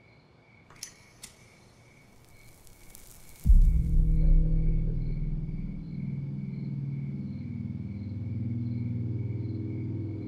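Eerie TV sound design: faint night ambience with steady cricket-like chirping and two sharp clicks, then a rising whoosh that ends in a deep boom about three and a half seconds in, the loudest moment. The boom opens into a low, sustained, dark music drone.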